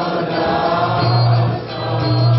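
A man singing a devotional Vaishnava song into a microphone, with other voices joining in over musical accompaniment. A low held note comes in about a second in.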